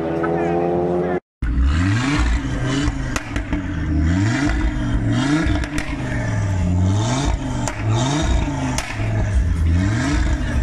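In the first second, a car accelerating away with a slowly rising engine note. After a brief cut, an Audi RS3's turbocharged five-cylinder engine is revved repeatedly while parked, the revs rising and falling about once a second.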